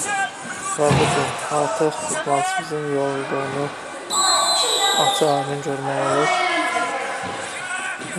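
Men's voices talking and calling out over arena noise, with a shrill steady whistle lasting about a second, about four seconds in.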